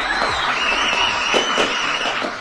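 Steady applause and cheering from a crowd, an added effect that greets a winner's announcement.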